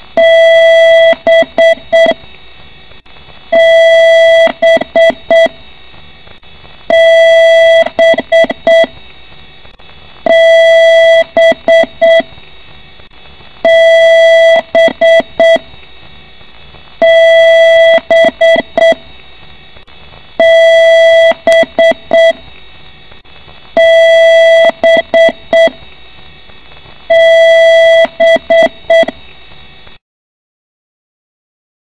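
PC speaker sounding a BIOS power-on self-test beep code: one long beep followed by a quick run of short beeps at the same pitch, the pattern repeating about every three and a half seconds, nine times over. A repeating long-and-short beep code like this is how the BIOS signals a hardware error at startup.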